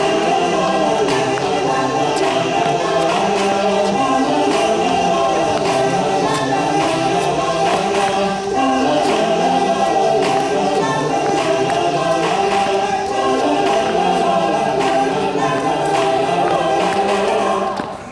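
Music of a choir singing, several voices in harmony, that stops abruptly at the very end.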